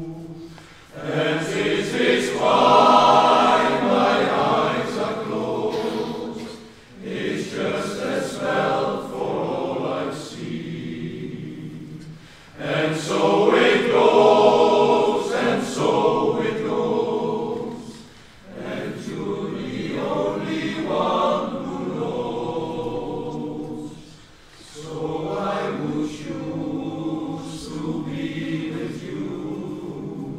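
Men's choir singing in long, held phrases, with short breaks between phrases about every five to six seconds; the fullest, loudest swells come near the start and again about halfway through.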